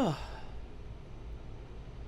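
A man's short, falling "huh" right at the start, close to a sigh. After it comes quiet room tone with a low steady hum.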